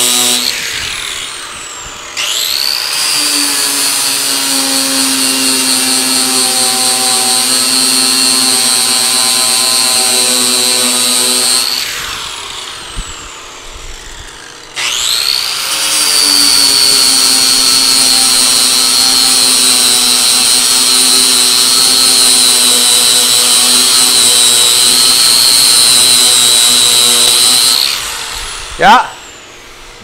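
Electric angle grinder with a sanding disc taking primer off sheet-metal car body panel, a steady high whine. It spins down about a second in, starts again and runs about ten seconds, winds down, starts once more and runs about thirteen seconds before winding down near the end; a single sharp knock follows just before the end.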